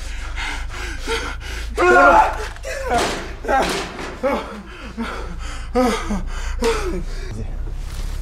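A man gasping and groaning in pain: a string of strained, breathy cries with short pauses between them, over a steady low hum.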